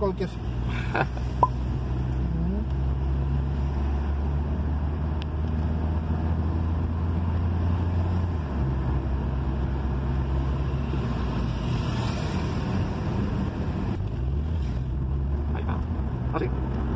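Car engine and road noise heard from inside the cabin while driving on a city street, a steady low hum. The engine note drops about halfway through and picks up again near the end.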